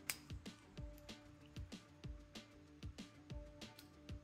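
Small irregular clicks and ticks of 3D-printed plastic as the articulated crab's legs are picked at and flexed by hand, working joints that a thin film from the print has left stiff so they break free. A faint steady tone runs underneath.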